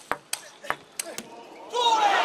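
Table tennis rally: sharp clicks of the celluloid-type plastic ball striking bats and table, about three a second. Near the end the rally stops and a loud crowd cheer breaks out, marking the point won.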